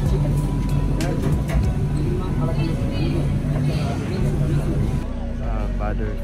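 Busy food-court background noise: indistinct voices and occasional clinks over a steady low hum. The room sound changes abruptly about five seconds in.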